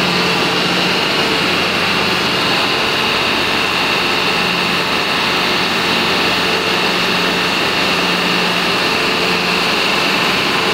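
Electric lift motor of a direct-cooling block ice machine running steadily, a constant machine hum with a high whine over it, as it drives the ice-mould platform.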